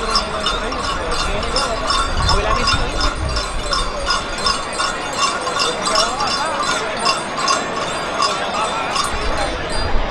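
A harnessed mule walking as it hauls a stone sled, with its harness and traces clinking at about three clinks a second, over crowd chatter and voices.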